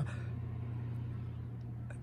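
Steady low hum under faint background noise, with no distinct event.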